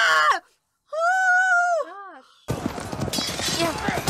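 Battle scene from a film soundtrack: one long high yell that holds and then falls away, followed a moment later by a dense din of clashing and shouting that starts suddenly about two and a half seconds in.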